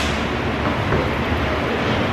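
Steady rushing room noise in a dance studio, with faint indistinct voices in the background.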